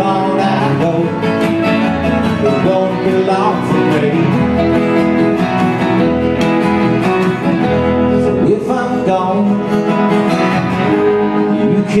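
Live Americana band playing an instrumental passage on mandolin, electric and acoustic guitars and upright bass.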